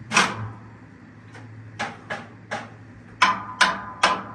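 Loose, irregular hits on a drum kit, about seven strikes with gaps of a third of a second to over a second, the last few closer together and loudest. A low steady hum runs underneath.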